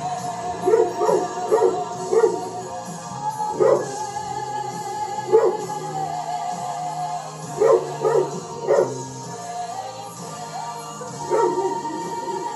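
A dog barking: about ten short barks in small bunches, including quick runs of three near the start and again past the middle, over music.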